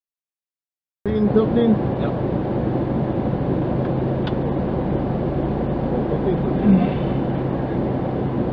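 Rally car's engine idling, heard from inside the cabin: a steady low hum that starts suddenly about a second in.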